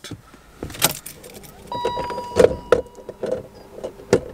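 Car key jangling and clicking in the ignition switch as the ignition is switched off and back on, with an electronic beep lasting about a second midway through.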